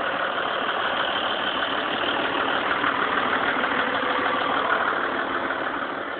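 Snowmobile trail-grooming tractor's engine idling steadily.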